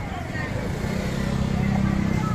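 A vehicle engine running close by, coming in about half a second in and getting louder, over the chatter of voices around it.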